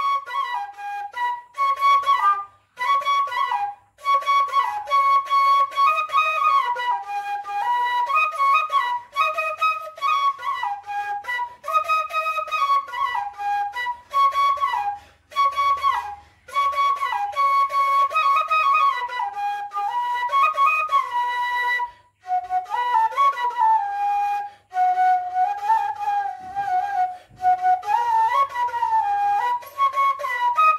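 Bamboo bansuri flute played solo: a melody of held and stepping notes, broken by short gaps every few seconds, settling on lower notes in the last few seconds.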